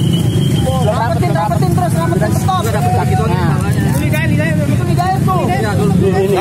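Several men talking over one another, over a steady low rumble.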